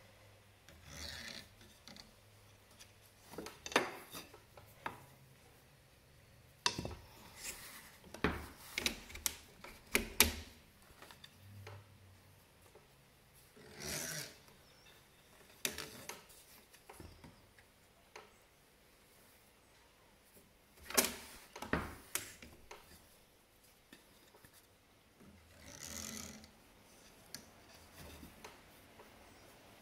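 Plain weaving on a wooden rigid heddle loom: a stick shuttle sliding through the warp threads with a rasping rub, and the heddle knocking sharply as it is shifted between up and down and beaten against the cloth. The rubs and knocks come in irregular rounds, with quieter gaps between.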